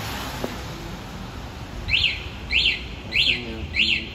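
A series of four identical high, quick chirps, each rising and falling in pitch, evenly spaced about two-thirds of a second apart and starting about two seconds in, over faint background noise.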